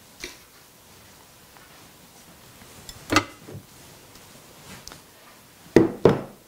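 A few light knocks and clicks from a small glass bowl of piping gel and a brush being picked up and set down on the work table, the sharpest knock about three seconds in.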